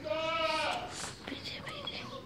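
A young goat bleats once, a loud call of under a second right at the start, followed by fainter calls and voices.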